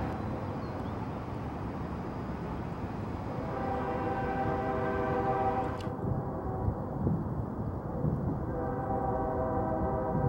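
A train horn sounding a long chord over a steady rumbling noise. It starts a few seconds in and sounds again near the end.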